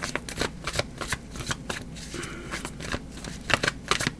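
A deck of tarot cards being shuffled by hand: a quick, irregular run of flicks and slaps as the cards slide against each other, thickest near the end.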